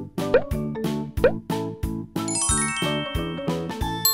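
Bouncy children's background music with a steady beat, joined by two short rising pop sound effects in the first second and a twinkling chime run from about halfway through.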